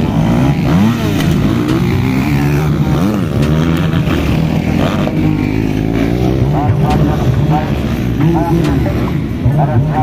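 Several motocross dirt bikes racing on a dirt track, their engines revving, the engine notes repeatedly rising and falling and overlapping.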